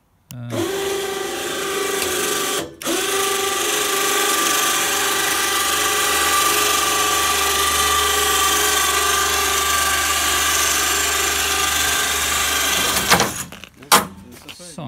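Small electric winch motor lifting a snowblade frame by cable, running with a steady whine. It stops briefly about three seconds in, then runs on and cuts off about a second before the end.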